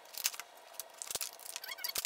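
Plastic blister packaging crackling and clicking as it is handled and pulled open, with a brief squeaky scrape near the end.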